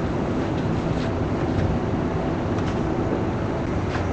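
Steady low background rumble of room noise, with no speech.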